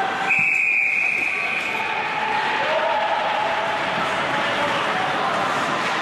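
A referee's whistle blows one long, steady, high blast about a second long and then fades, stopping play after the goalie's save. After it there is the rink's background of distant voices.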